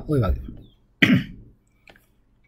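A single short cough about a second in, following a brief spoken syllable.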